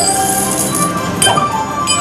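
Wild Leprechaun slot machine's bonus-round game music, with bright chiming and clinking effects as the reels stop and WILD symbols land. There are two sharp chimes, one at the start and another about a second and a quarter in.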